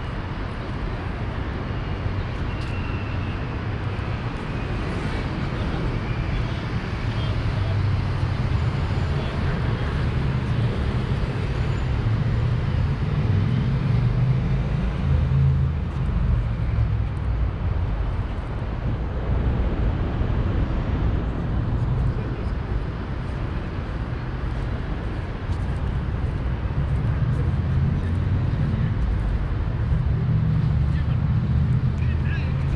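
Steady road-traffic rumble from the harbourside road and the elevated highway beside it: a deep low drone that swells a little as vehicles pass, in the middle and again near the end.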